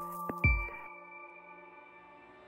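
End of a short electronic logo jingle: a last struck note about half a second in, whose tones ring on and fade away.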